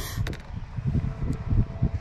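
Low, uneven wind rumble on the microphone, with a few faint clicks near the start.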